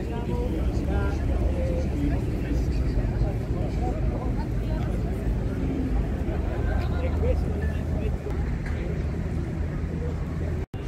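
Indistinct chatter of many people talking at once over a steady low rumble.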